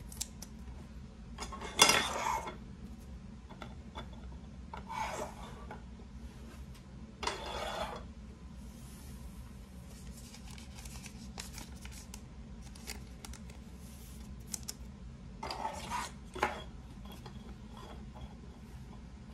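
Trading cards in rigid plastic holders being handled and set onto plastic display stands: four short scraping, rubbing sounds, the loudest about two seconds in, with light clicks of plastic between them.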